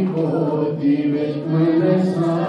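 A man's voice singing a slow melody in long held notes that step from pitch to pitch.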